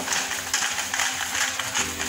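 Chicken, mushrooms and celery frying in oil in a pan, a steady sizzling hiss.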